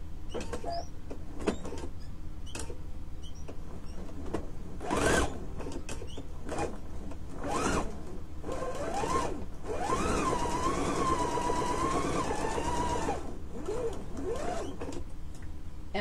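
Husqvarna Viking sewing machine stitching a seam. There are a few short starts with clicks, then a longer run of a few seconds from about the middle, its motor whine rising and holding steady before it stops.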